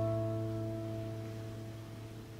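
Taylor steel-string acoustic guitar: a plucked chord left ringing, slowly dying away with no new notes.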